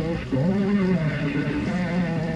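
Lo-fi noise rock improvisation: wavering, sliding pitched tones, each held for about a second, over a low rumble.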